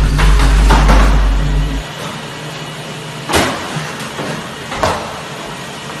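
Treadmill running, its motor and belt making a steady mechanical hum. A loud low rumble drops away about two seconds in. Sharp knocks come through it, the loudest two about a second and a half apart in the second half.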